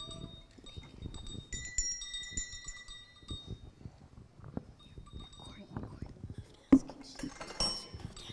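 Small handbells ringing here and there in short, high, overlapping tones as children pick them up and shake them, over low murmuring. A single sharp knock comes about three-quarters of the way through, followed by a brief clatter.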